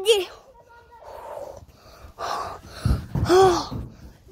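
Children's voices: a short spoken word, breathy gasps, then a high-pitched call near the end. A low thump comes just before the call.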